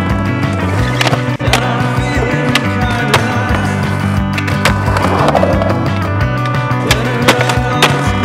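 Skateboard wheels rolling on concrete, with sharp clacks of the board popping and landing, under a loud song.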